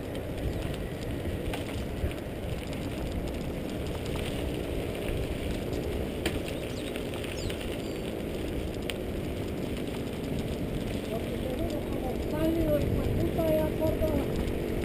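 Wind rushing over the microphone of a camera on a moving mountain bike, with tyres rumbling over a gravel dirt road and a couple of sharp ticks from the bike.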